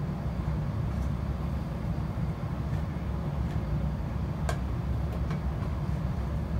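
Steady low rumble inside the passenger saloon of a Class 170 Turbostar diesel multiple unit, from its underfloor diesel engines and running gear. A single sharp click sounds about four and a half seconds in, followed by a couple of fainter ticks.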